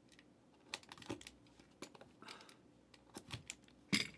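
A cardboard trading-card box being handled and lifted from its outer box: scattered light taps and clicks, with a short scrape just after two seconds and a sharper knock at the very end.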